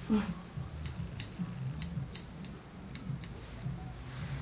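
Grooming scissors snipping a schnauzer's coat on the leg: a series of short, sharp snips at irregular intervals over a low steady hum.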